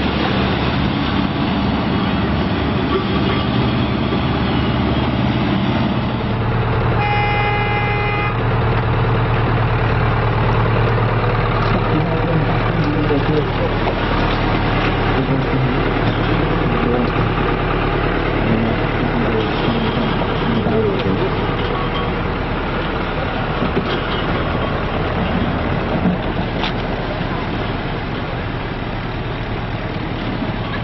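Diesel engine of an RNLI launch tractor running steadily as it backs a D-class inflatable lifeboat on its trailer into the shallows. A horn sounds once, about seven seconds in, for about a second and a half.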